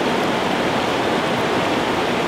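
Steady rush of a fast freestone river running over rocks.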